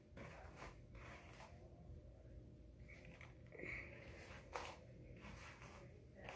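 Near silence: faint rustling as hands work through hair, with a couple of light clicks about three and a half and four and a half seconds in.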